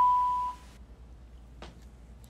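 A steady, pure electronic beep tone that cuts off about half a second in, followed by faint room tone.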